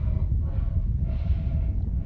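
Low, uneven wind rumble on the microphone, with a man's soft breath about a second in.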